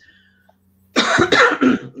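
A person coughing: a short run of quick coughs about a second in, after a near-silent pause.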